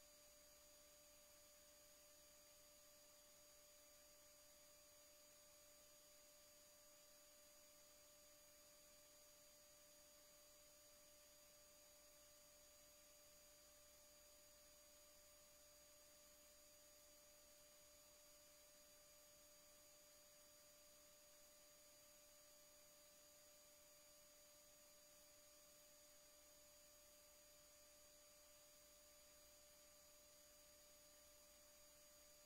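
Near silence: only a faint, steady electrical hum of a few fixed tones over low hiss, unchanging throughout.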